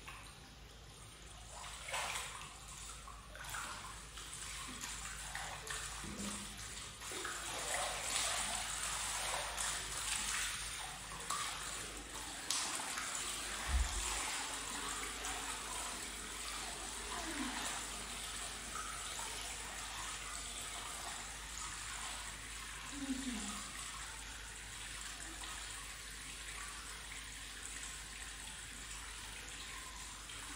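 Hot-spring bath water sloshing and splashing irregularly as a person wades in and sits down, settling after about 14 seconds into a steadier lapping and running of water. A few short vocal sounds come through the water noise.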